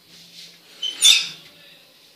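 Oven of a gas stove being closed on a roasting pan: a short, high-pitched metallic squeak and clank about a second in.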